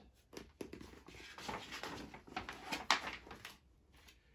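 Paper rustling as a large picture-book page is handled and turned, with a few sharper crackles, the sharpest about three seconds in.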